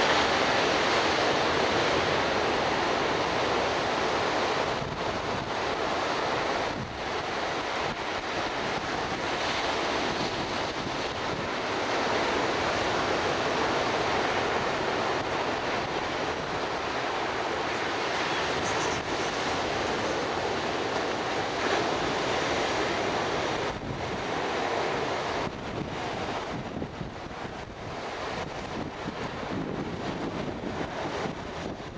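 Ocean surf breaking on a sandy beach: a steady wash of waves that eases briefly a few times, with wind on the microphone.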